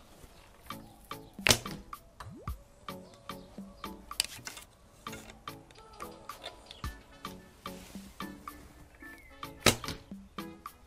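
Two shots from a 35-pound traditional bow loosed with a thumb ring: a sharp snap of the string on release about a second and a half in, and again near the end. Background music with a steady beat plays throughout.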